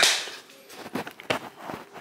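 A few short, light knocks and taps, scattered irregularly over about a second and a half.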